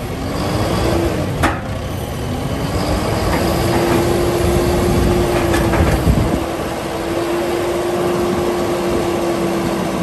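John Deere 6130D tractor's diesel engine running with its note climbing and then holding steady while the H260 front loader's hydraulics lower and tilt the bucket. There is a sharp clunk about one and a half seconds in, and a few lighter knocks around six seconds.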